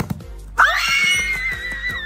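Background music, with a sudden shrill, high-pitched squeal like a scream starting about half a second in and held for about a second and a half.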